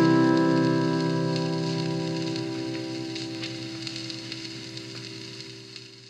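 Closing music: a final acoustic guitar chord left ringing, its held notes slowly fading away.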